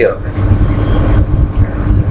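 A loud, uneven low rumble with a faint hiss above it, between spoken phrases.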